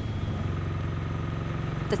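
Engine running at a steady speed, a low even hum, as it drives the pump moving water into the supply lines.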